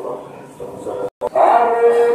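A man's voice reciting prayer, broken by a sudden brief gap in the sound a little after a second in; then a loud chanted prayer in a man's voice begins, with long held notes.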